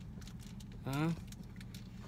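Steady low hum of a vehicle's engine running, heard inside the cab, with faint scattered clicks over it.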